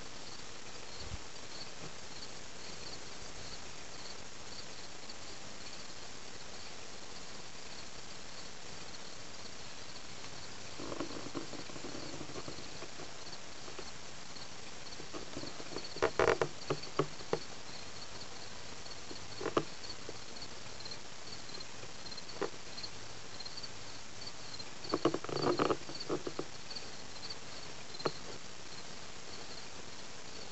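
Insects chirping in a steady, high, pulsing trill, with scattered soft knocks and rustles on top, the loudest clusters about 16 and 25 seconds in.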